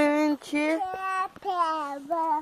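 A young girl singing unaccompanied, a string of held notes of about half a second each, gliding a little between pitches.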